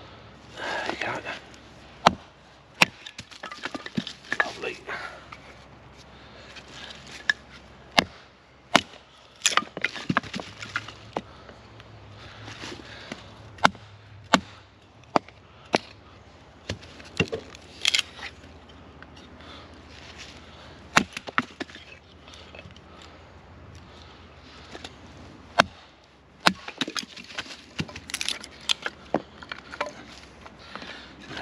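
Batoning pine into kindling: a wooden baton knocking on the spine of a large fixed-blade knife at irregular intervals, with the crack and tearing of the pine as splits come away.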